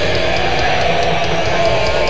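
Blackened death metal band playing live: distorted electric guitars and bass over drums, with regular cymbal strokes and a held, wavering note over the riff.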